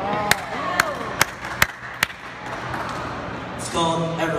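Five sharp clicks or taps at an even pace, about two and a half a second, in the first half, over voices in the room.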